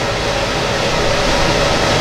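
Steady, even background hiss with no distinct events, growing slightly louder toward the end.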